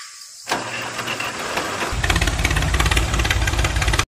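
An engine starting: a rushing noise begins about half a second in, and about two seconds in a fast low throbbing of the running engine joins it. It cuts off abruptly at the end.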